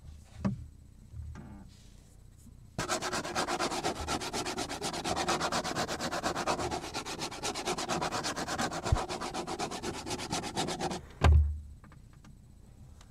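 Rapid, even scratching strokes across the surface of a cutting board, about nine a second, starting about three seconds in and stopping near the end. A loud low thump follows as it stops.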